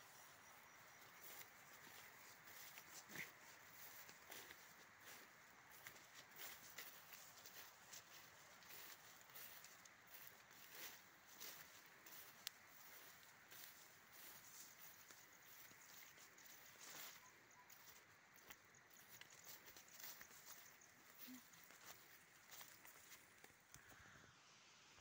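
Near silence outdoors, with faint scattered rustles and small clicks throughout.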